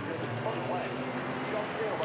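GT race car engines running on the circuit: a steady engine note from a pack of cars.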